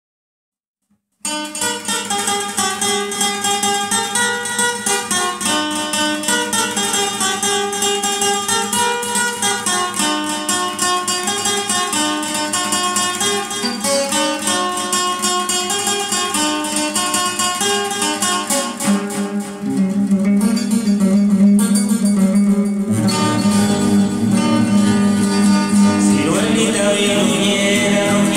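Acoustic guitar playing a fast picked melody, starting about a second in. The playing grows fuller and louder with more bass notes in the last few seconds.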